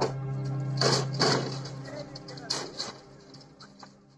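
Ambient background music, a sustained low drone like a singing bowl, fading out toward the end. It is broken by a few short voice-like bursts about a second in and again around two and a half seconds in.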